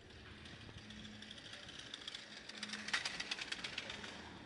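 Bicycle rattling over cobblestones as it passes close by: a hiss that builds, then a quick run of clicks and rattles, loudest about three seconds in.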